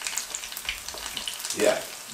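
Sea bass fillets sizzling as they fry in oil in a non-stick frying pan, a fine, even crackle.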